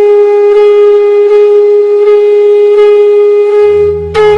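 Nadaswaram holding one long, steady note. Drums come in just before the end.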